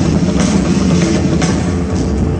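Music with a steady drum beat and heavy bass.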